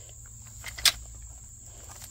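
A single sharp click a little under a second in as the Fiskars four-prong weeder is levered back to pull a weed's root out of gravel, over a steady high trill of crickets.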